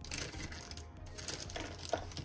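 Soft background music, with light clicking and rattling of pens and markers as a hand rummages through a fabric pencil pouch.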